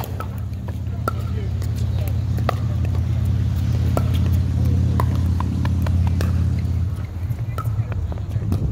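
Pickleball paddles popping against a plastic ball in a rally, a series of sharp hits about a second apart. Under them runs a low droning hum, like an engine, that grows louder and stops about seven seconds in.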